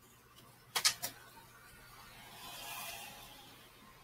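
Tarot cards being handled: two quick sharp flicks a little under a second in, then a soft swish of a card sliding off the deck around the three-second mark.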